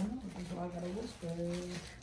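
Quiet speech: a voice talking softly in the room, well below the main speaker's level, trailing off near the end.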